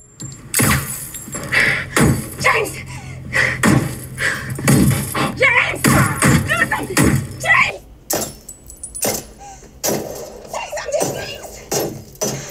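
A film scene's soundtrack playing through the Apple Studio Display's built-in speakers: voices over music, with a low steady hum that stops about eight seconds in.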